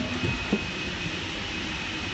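Steady machinery hum and hiss inside a Boeing 747's fuselage, with a thin steady high whine running through it. A few light knocks come in the first half second.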